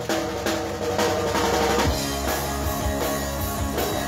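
Rock band playing live: a drum kit keeping a steady beat on bass drum and snare under electric guitar and bass guitar.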